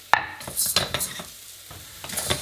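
Arborio rice and shallots sizzling in hot oil in a stainless steel pot as the rice toasts, with a wooden spoon stirring and scraping through the grains. A single sharp knock comes just after the start.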